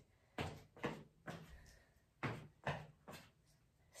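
Footsteps of sandalled feet on rubber gym flooring during a stepping cardio move: faint thuds in two groups of three.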